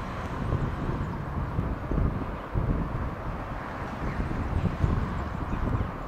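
Outdoor background noise: wind buffeting the microphone, giving an uneven low rumble with a steady hiss above it.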